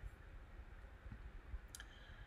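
A single computer mouse click near the end, over faint low room hum.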